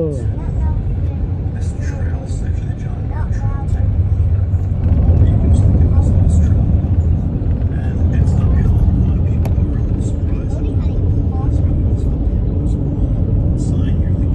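Road and engine noise inside a moving car's cabin: a steady low rumble that grows louder about four seconds in. A cough and a laugh come at the start.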